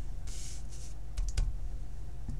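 Hands handling a plastic-cased Memento ink pad and a clear stamp while inking it: a short rustle, then three quick light clicks a little over a second in.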